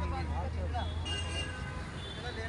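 Indistinct voices mixed with short high chirps from caged pet cockatiels and budgerigars, over a steady low traffic hum.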